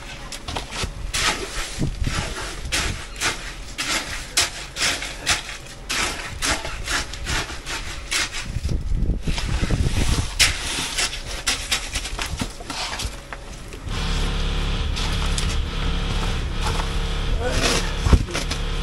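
Irregular scraping and knocking strokes of a hand tool working wet concrete. About fourteen seconds in, a steady engine starts running under it.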